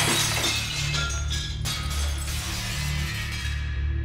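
Dramatic film score with steady low sustained tones, and a shattering crash right at the start whose high ringing fades out near the end.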